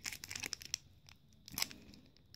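Foil booster-pack wrapper crinkling as fingers pick and tear at its sealed top: a run of short crackles in the first second, then a few more just past halfway.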